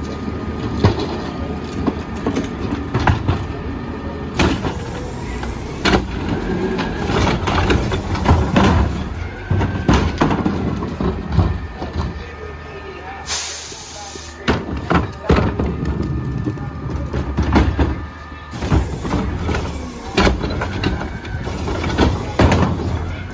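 A CNG-powered Mack LEU garbage truck idling, with plastic wheeled carts knocking and rattling as they are rolled over concrete and tipped into the carry can. There is a short hiss of air about thirteen seconds in.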